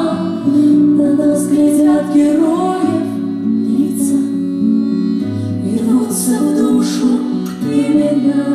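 Female vocal trio singing a song together into microphones, held notes in harmony over instrumental backing.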